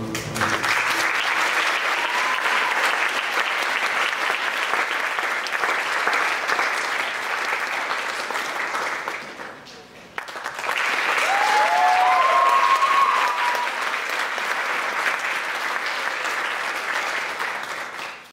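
Audience applauding. The applause dies down briefly about ten seconds in, then swells again, louder, with a few cheers.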